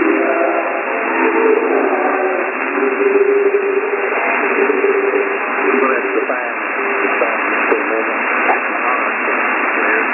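Weak shortwave broadcast from WJHR on 15555 kHz, received in upper-sideband mode on a software-defined radio. A voice with drawn-out notes sits buried in steady hiss, and the audio is thin and narrow.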